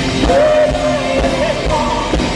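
Live rock band with a woman singing lead, recorded from the audience: she holds a long sung note over electric guitar, keyboards and drums.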